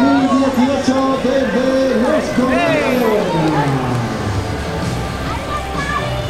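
A loud voice calling out in long, drawn-out tones over music, with one long call falling in pitch about halfway through; crowd noise underneath.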